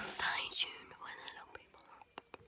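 A girl whispering, trailing off after about a second.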